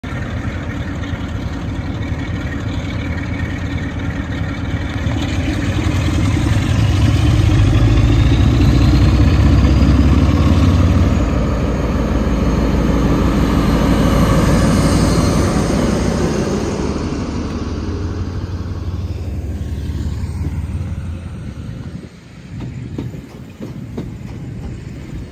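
Class 47 diesel-electric locomotive's twelve-cylinder Sulzer engine working hard as it pulls a train away from a stand, a deep rumble with a faint rising whistle, loudest about eight to fifteen seconds in. It then fades as the locomotive draws away, leaving the coaches rolling past near the end.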